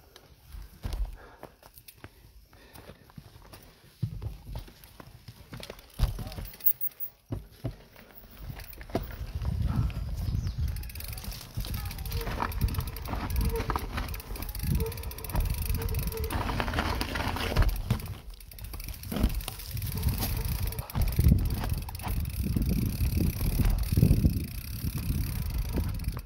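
Mountain bike going down a rough dirt trail, heard from its handlebars: tyres rumbling over dirt and roots, with the bike knocking and rattling over bumps. It starts with a few separate knocks and turns into a loud, continuous rumble about eight seconds in as the bike picks up speed.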